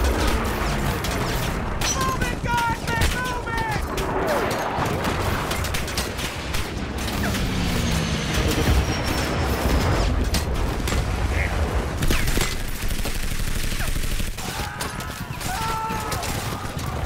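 Film battle soundtrack: rapid gunfire and heavy impacts over a low rumble, with shouted voices early on and again near the end.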